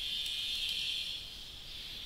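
Steady high-pitched hiss of background noise, easing off after about a second and a half.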